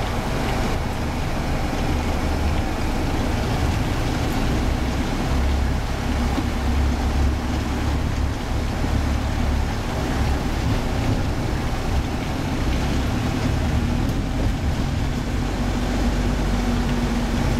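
Steady low rumble of a vehicle's engine and road noise while driving slowly along a busy street, with traffic around.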